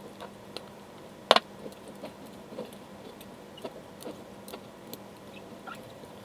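Scattered light clicks and taps of a metal utensil against a glass mason jar as it is worked down among packed peppers in brine to free trapped air bubbles, with one sharper click just over a second in.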